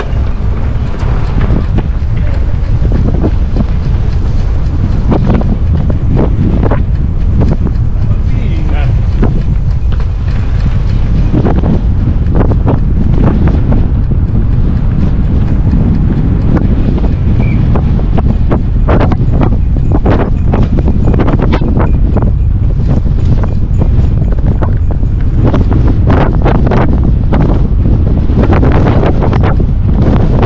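Strong wind buffeting the microphone of a camera on a moving e-bike: a loud, constant low rumble with frequent gusty thumps.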